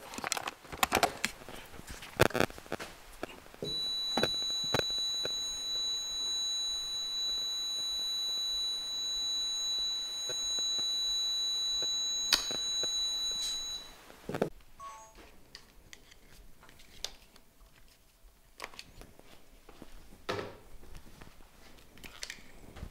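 An electronic alarm sounds one steady high-pitched tone for about ten seconds, starting a few seconds in. Clicks and handling noises come before and after it.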